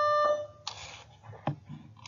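A steady electronic beep, one held pitch with overtones, that cuts off about half a second in, followed by a brief hiss and a single click.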